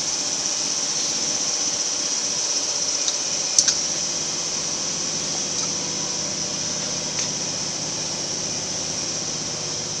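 Steady hum and hiss of machinery running in a factory hall, fan-like and even throughout. A light metallic clink comes about three and a half seconds in.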